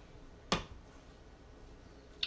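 A single sharp click about half a second in: a blade finishing a slice through a log of hot process soap and striking the wooden cutting board beneath.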